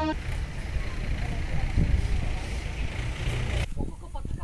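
Steady outdoor field noise: a rushing hiss with a low rumble and faint voices mixed in. It cuts off sharply near the end.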